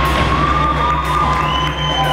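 Indoor percussion ensemble's show music: held tones that slowly slide in pitch, over a steady low drone and a fast, even low pulse, with an arena crowd cheering.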